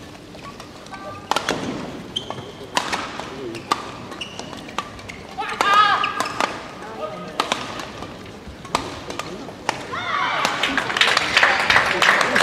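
Badminton rally: sharp racket strikes on the shuttlecock about every second and a half, with spectators' voices in the hall, then crowd cheering and clapping as the rally ends near the end.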